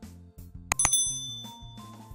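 A short mouse-click sound effect, then a high, bright notification-bell ding that rings out for about half a second: the sound effect of a subscribe button and its bell being clicked, over light background music.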